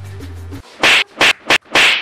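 Background music cuts out, then four loud slaps land in quick succession, a little under a second long in all: a hand striking a person on the head and back.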